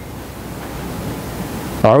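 A steady hiss of room noise that grows slightly louder during a pause in a man's speech. His voice comes back right at the end.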